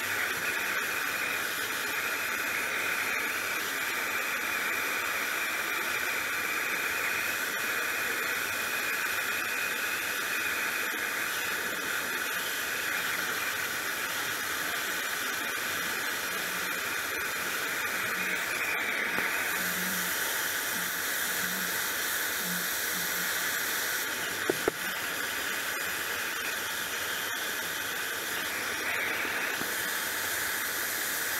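Handheld MAP gas torch burning with a steady hiss while its flame heats a 304 stainless steel rod for bending. A brighter, sharper hiss joins in for a few seconds past the middle and again near the end, and a short click sounds about two-thirds through.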